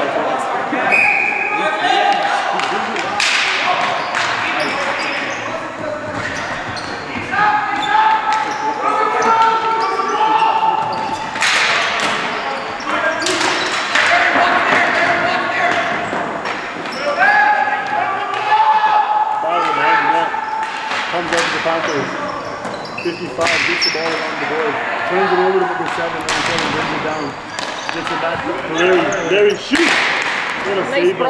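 Ball hockey play on a hard gym floor: the ball and sticks clack and smack against the floor and boards again and again, ringing out in the large hall, with voices calling out over the play.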